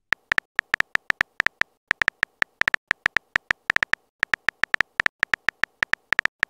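Simulated phone keyboard key clicks from a texting-story app, sounding as a message is typed. A fast, irregular run of short, high clicks, about six or seven a second, with a brief pause about two-thirds of the way through.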